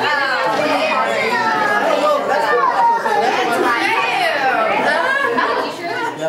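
Several voices talking over one another at once, some of them high-pitched, with no single voice clear.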